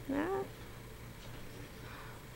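A cat's single short meow, about a third of a second long, near the start, while it rolls in catnip.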